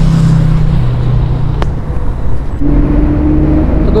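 City street traffic: engines of motor vehicles, a motorcycle among them, running as they pass close. A steady low engine hum fills the first two seconds, and a higher steady hum comes in about two and a half seconds in.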